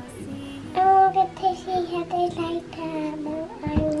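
A little girl singing a short tune in held, stepping notes, over soft background music.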